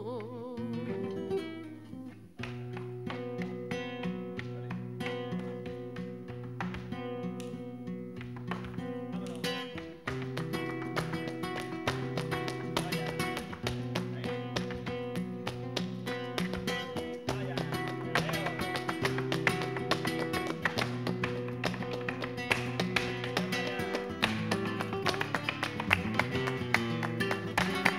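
Flamenco guitar playing a granaína, with repeated bass notes and melodic runs. A flamenco dancer's shoes strike the wooden stage in zapateado footwork, the strikes growing denser and louder through the second half.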